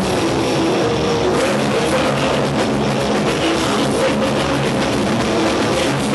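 Black metal band playing live: distorted electric guitars and a drum kit, loud and steady throughout.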